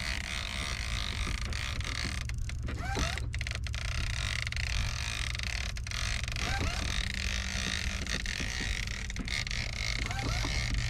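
A small sailboat's inboard engine running steadily, with a low, even hum.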